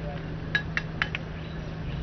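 Four short, sharp metallic clicks in quick succession, about half a second to one second in, over a steady low hum.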